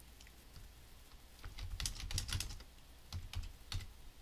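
Typing on a computer keyboard: a quick run of keystrokes about a second and a half in, then a few more keystrokes near the end.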